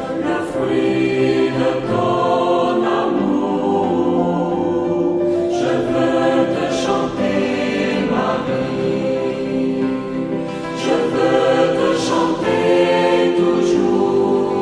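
A choir singing a Christian hymn, with sustained held chords.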